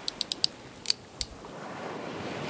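Sound effect of sharp, high clicks, like typewriter keys, in two quick runs: four clicks in the first half-second, then three more by about a second and a quarter.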